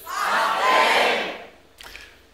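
Studio audience cheering and shouting in a brief burst that swells at once and fades out after about a second and a half.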